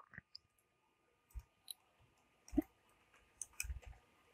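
Faint computer keyboard keystrokes while a word is typed: a few scattered clicks, then a quick run of them near the end.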